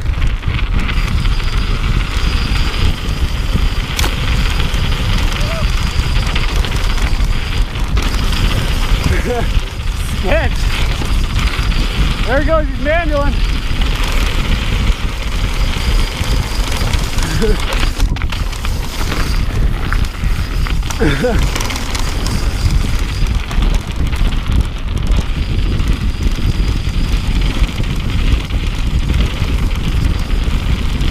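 Wind buffeting an action camera's microphone over the tyre rumble and rattle of a mountain bike riding fast down bare sandstone slab, a steady loud rush throughout. Brief shouts come through in the middle, around 10 to 13 seconds in and again near 21 seconds.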